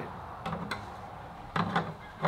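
Light hard-plastic clicks and knocks: a black plastic pipe adapter being handled and fitted onto the outlet of a 9,000-gallon-per-hour pond pump. Two short sharp clicks come about half a second in, and a louder, busier stretch of handling sound near the end.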